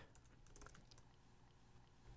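Faint computer keyboard typing: a few soft keystrokes over a steady low hum.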